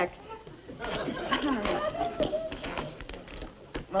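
Studio audience laughter with scattered light clicks and taps as small objects are put back into a handbag.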